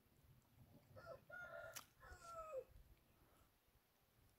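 A rooster crowing once, faint, starting about a second in; the crow lasts about a second and a half and ends on a falling note. A single sharp click sounds partway through it.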